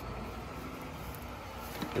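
Steady low background rumble and hum with no distinct events; speech begins right at the end.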